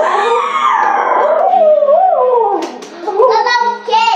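A long howl that wavers and slides down in pitch over about three seconds.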